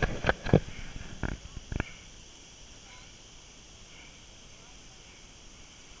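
Water splashing and knocking at a handheld camera held by a man swimming one-armed through a river pool. A few sharp splashes in the first two seconds, then only a faint steady hiss.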